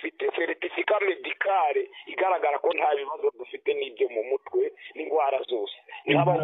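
A person talking over a telephone line: thin, narrow-sounding speech from a recorded phone call.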